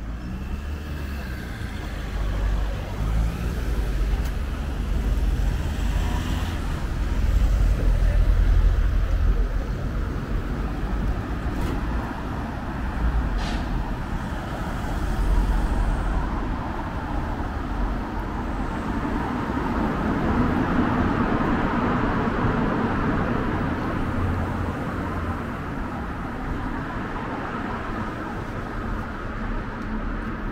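Road traffic: cars and other vehicles passing on the street, a continuous rumble of engines and tyres that swells twice, louder in the first half. Two brief sharp clicks come around the middle.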